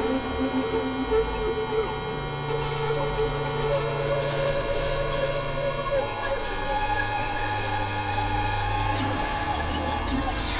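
Experimental electronic noise music: layered synthesizer drones and noisy sustained tones, with the low bass notes shifting to new pitches every few seconds.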